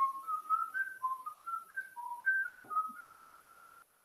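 A person whistling a short tune: a string of clear notes stepping up and down, ending on a longer held note that cuts off shortly before the end.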